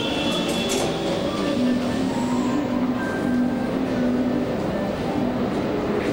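Subway station noise: a train running through the station, a steady rumble with a few held higher tones over it.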